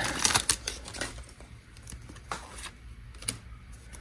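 A torn Pokémon booster pack wrapper crinkling as the trading cards are slid out of it, then a few light clicks of the card stack being handled.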